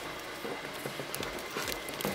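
A plastic balloon being handled and pressed into a vacuum sealer's channel: scattered small clicks, taps and plastic rustles.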